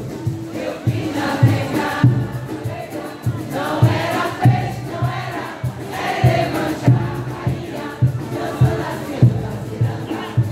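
Live ciranda music: a group singing together over a steady bass drum beat, about two strokes a second, with crowd noise mixed in.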